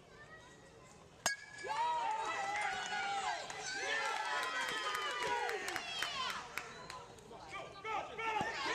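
A softball bat strikes a pitched softball with one sharp crack about a second in, and spectators break into shouting and cheering right after.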